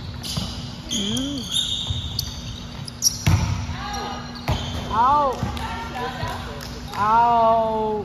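Volleyball rally on a gym floor: the ball is struck with sharp smacks, the loudest about three seconds in and again at about four and a half. Sneakers squeak on the hardwood, and players shout short calls, with one long call near the end.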